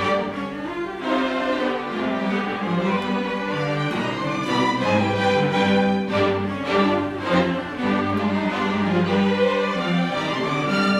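A string orchestra of violins, violas and cellos playing live, the upper strings moving over held low notes.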